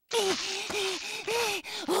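A clay cartoon monster's voice making a run of about six short, gasping whimpers in quick succession over a breathy hiss, each one rising and then falling in pitch: a distressed, parched-sounding cry.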